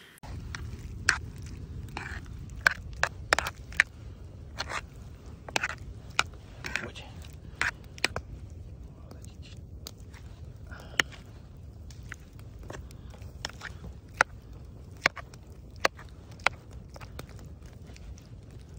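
A metal spoon clinking and scraping against a cast-iron skillet as chunks of meat in gravy are stirred. The clicks are sharp and irregular, over a steady low rumble.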